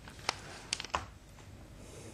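A few faint, sharp clicks over low hiss: one near the start, then a quick run of three just before one second in.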